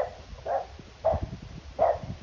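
A French bulldog barking four times at a steady pace, about one short bark every half-second or so.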